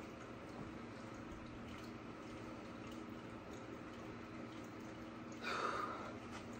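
Quiet room with a faint, steady low hum. About five and a half seconds in comes a brief, louder rustle of handling.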